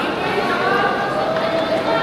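Crowd chatter: many people talking at once, with a voice standing out over the steady hubbub in the second half.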